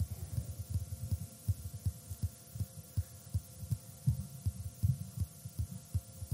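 Rapid, uneven low thumps, about five a second, over a faint steady hum.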